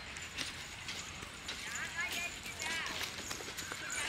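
Footsteps in slippers on a dry dirt path strewn with leaves, an uneven run of light slaps and crunches. Short high-pitched calls come in over them from about a second and a half in.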